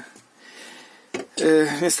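A brief pause with only faint background hiss, a short click just after a second in, then a man's voice speaking.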